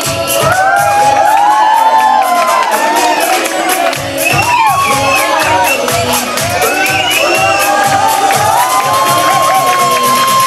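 An audience cheering, screaming and whooping over loud dance music with a steady beat.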